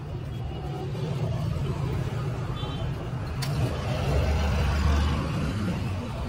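Low rumble of a motor vehicle engine running close by. It swells louder about four seconds in, then eases off near the end.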